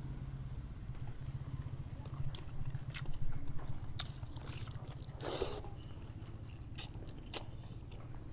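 Close-up eating sounds of a man chewing rice and tilapia by hand: scattered small clicks and mouth noises, with one louder noisy burst a little past the middle. A steady low hum runs underneath.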